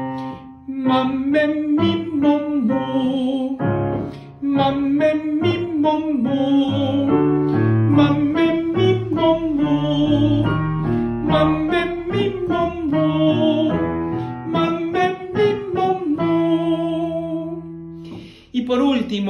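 A man singing a vocal warm-up exercise on vowels, accompanying himself with chords on a digital piano. The sung phrases repeat, with short breaks for breath near the start and about four seconds in.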